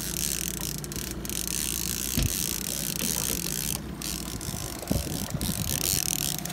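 Fishing reel clicking as a hooked salmon is played and reeled toward the landing net, over the steady low hum of the boat's engine, with a couple of short knocks.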